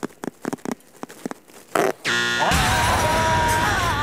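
Metal zipper on a duffel bag being eased open, with a string of small irregular clicks from the teeth. About two seconds in, a game-show buzzer sounds, followed by loud music for the failed silent challenge.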